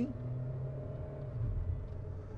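Jeep Renegade's 1.8 petrol engine heard from inside the cabin as the car pulls away gently in traffic: a low, steady hum.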